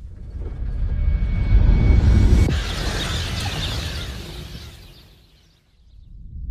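Explosion from the comet fragment's impact: a deep rumble swells, then a sudden hissing crash comes in about two and a half seconds in and dies away.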